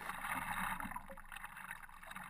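Faint water sounds from a stand-up paddleboard being paddled: paddle strokes in the water and water lapping at the board.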